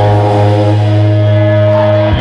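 A single low, distorted note held on amplified electric guitar, ringing steadily without drums, cut off sharply at the end.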